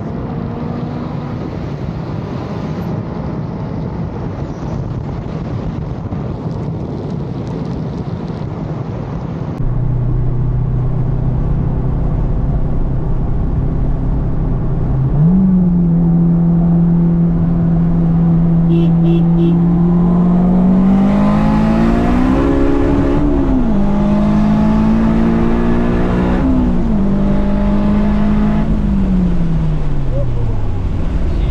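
Car engine and road noise at highway speed, then, from about ten seconds in, a turbocharged Acura RSX's four-cylinder engine heard from inside the cabin: a steady drone that steps up in pitch, then climbs and falls as the car speeds up and eases off.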